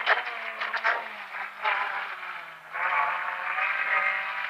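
Rally car engine heard from inside the cabin, its revs falling steadily for a couple of seconds, then dipping and picking up again nearly three seconds in as the car is driven through a bend.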